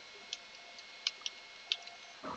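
Faint computer keyboard keystrokes, about six light clicks spread unevenly over two seconds, as a save-and-quit command is typed in the vim editor.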